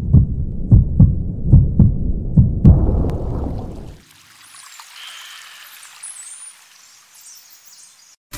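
Heartbeat sound, the heartbeat of an unborn baby heard through the belly: deep double beats, a lub-dub a little more often than once a second, which stop abruptly about four seconds in. A faint airy hiss with a few high whistling glides follows.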